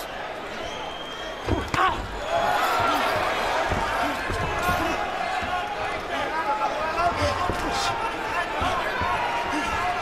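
Arena crowd cheering and shouting during a boxing exchange, swelling about two seconds in, with scattered dull thumps beneath.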